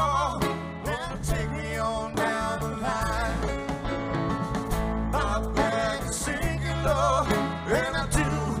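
Live rock band playing an instrumental jam: electric guitars, bass and drum kit, with wavering, vibrato-laden guitar notes over a steady beat.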